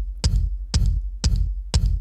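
Electronic kick drum processed through the Rhino Kick Machine plugin and tuned to 46 Hz, with the pitch dive switched off. It plays a steady beat of deep, scooped thumps, each with a short click on top, four hits at two a second.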